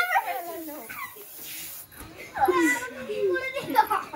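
Excited children's high-pitched voices, calling out and shrieking without clear words. One burst comes at the start and a longer one from a little past halfway.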